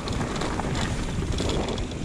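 Wind buffeting the camera's microphone, mixed with the steady rough rumble of a Haibike FLYON e-mountain bike rolling downhill over a rocky trail.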